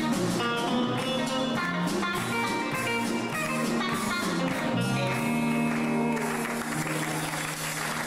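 Guitar music: a plucked melody over a steady bass line. Near the end the notes thin out into a noisy wash.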